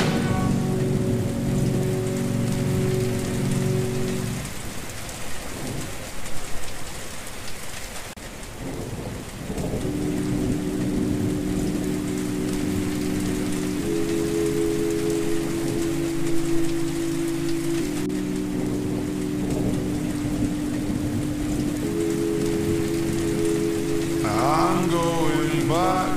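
Steady rain recording with thunder rumbling, under long held chords of slowed, reverb-heavy music. The chords stop about four seconds in, leaving rain and rumbling, and return about ten seconds in, changing chord every few seconds.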